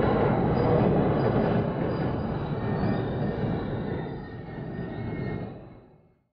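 Commuter train at a station platform, with rumbling wheel and rail noise and faint thin high tones above it. The sound fades away near the end.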